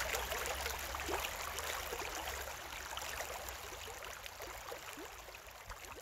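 Shallow stream running over gravel and pebbles: a steady babble of water with many small gurgles and splashes, fading gradually toward the end.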